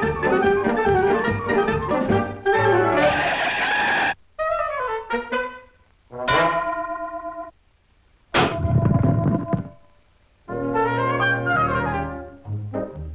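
Brass-led cartoon orchestral score that keeps stopping and starting. A busy passage gives way, after a sudden break, to a falling sliding phrase, and then to two short loud hits a couple of seconds apart that ring and fade into pauses before the music picks up again near the end.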